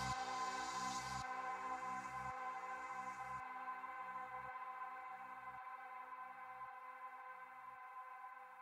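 Outro of a mid-tempo progressive psytrance track: a sustained electronic synth pad over a repeating pulsed synth figure, fading out steadily as the bass and high end thin away in steps.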